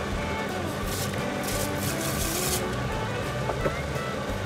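Dry rice poured from a mug into a pot of simmering coconut curry sauce: a hiss of falling grains, briefly about a second in and again for about a second in the middle, over steady background music.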